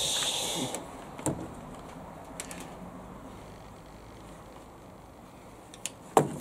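A short hiss, then a few faint clicks and knocks of handling over quiet room tone.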